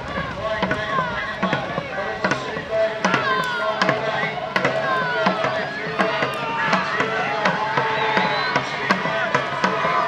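Dragon boat drum beating a steady stroke rate of about two beats a second, with many voices shouting and cheering over it.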